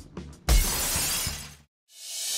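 A car window smashed in: a sudden crash about half a second in, then about a second of shattering glass that cuts off abruptly, with low film-score music under it.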